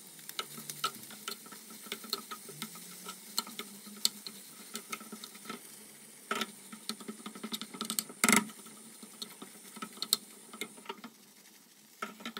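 A spoon stirring chicken pieces and shredded cheddar in a frying pan, with irregular clicks and scrapes of the spoon against the pan over a light sizzle. The loudest scrape comes about two-thirds of the way through.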